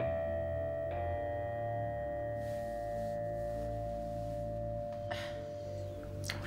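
Background film score: a bell-like tone struck at the start and again about a second in, ringing on for several seconds over a low, steady drone.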